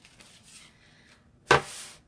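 A single sharp thump about one and a half seconds in, as hands come down flat on a towel laid over a metal sign on a wooden table, with faint rustling of the cloth before it.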